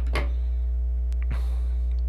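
Steady electrical mains hum, with a short scissor snip through craft paper just after the start and a light click and paper rustle later as the scissors and paper pieces are handled.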